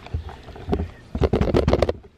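Handling noise from a phone held close to its microphone: irregular rubbing and knocks as it is moved about and set down on a counter, busiest in the second half.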